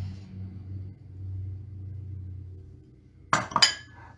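Mixing bowls clinking together: a few sharp clinks in quick succession near the end, over a low steady hum.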